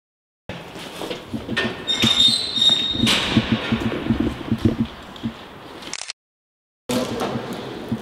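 Footsteps crunching and scuffing over a floor strewn with debris, with a brief high squeak about two seconds in. The sound drops to dead silence twice, at the start and near the end.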